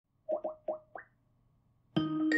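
Four quick electronic blips with a sliding pitch in the first second, the last one sweeping higher than the others, followed by quiet.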